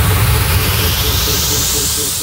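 Minimal techno at a break in the beat: the kick drum drops out and a white-noise sweep rises in pitch over a held low bass.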